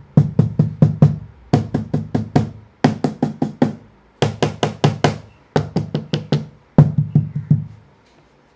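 A homemade 12 mm plywood cajon with a snare-spring assembly, played by hand with an unprocessed raw sound. It gives quick runs of strikes, deep bass tones mixed with sharper slaps, in short phrases broken by brief pauses. The playing stops just before the end.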